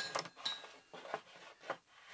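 A ferrite ring magnet from a microwave magnetron clicking against the steel magnetron body and wooden workbench: one sharp click at the start, then a few faint taps.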